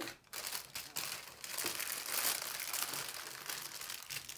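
Clear plastic packaging and small zip-lock bags of diamond-painting drills crinkling as they are handled, a dense irregular crackle that starts a moment in.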